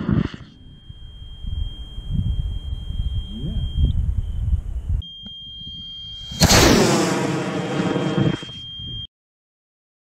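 CTI I297 Skidmark high-power rocket motor firing on a model rocket launch. A loud blast fades right at the start, then low rumble with a steady high-pitched tone. About six seconds in the motor ignites with a sudden loud blast and runs for about two seconds before the sound cuts off abruptly.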